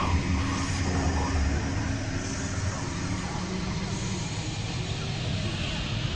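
Dense, continuous wash of several recordings playing over one another, with a steady low drone and voice-like sounds mixed in.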